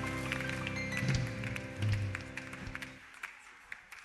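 Church band's closing held chord fading and then stopping about three seconds in, with scattered hand claps through it and a few last claps after the music ends.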